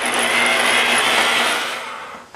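Electric rotary polisher with a foam pad running on a motorcycle's painted fuel tank, buffing the clear coat with a steady motor whine. It fades near the end as the pad comes off the tank.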